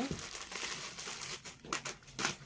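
Crinkling and rustling as a suit and its packaging are handled, with a few sharp crackles about a second and a half in.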